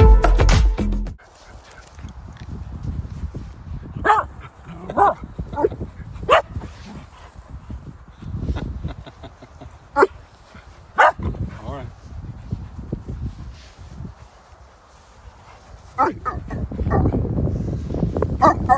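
Dogs playing together, giving a handful of short barks and yips a few seconds apart, over a low rumble. Background music runs briefly at the start and then cuts off.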